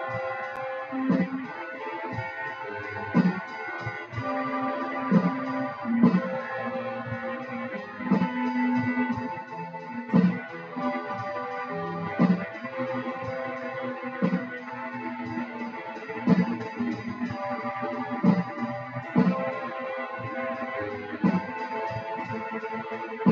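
Electric guitar played through an amp and effects: sustained notes and a riff over a steady beat, with a sharp hit about once a second.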